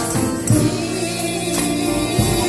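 Gospel music in a church service: a choir singing held, sustained chords over instrumental accompaniment, with percussion strikes keeping the beat.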